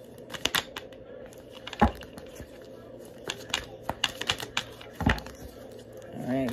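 Tarot deck being shuffled by hand: a run of quick card flicks and snaps, with two heavier thumps about two seconds in and about five seconds in.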